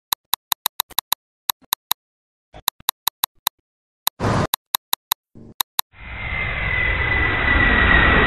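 A rapid run of identical sharp clicks from the flashcard app's buttons as cards are tapped through, then from about six seconds in a jet airplane sound effect: a steady rushing roar with a high whine that slowly falls in pitch.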